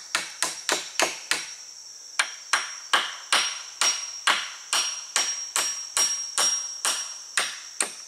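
Hammer striking at a joint of a wooden round-pole frame: a steady run of sharp blows, about two to three a second, with a short pause about a second and a half in.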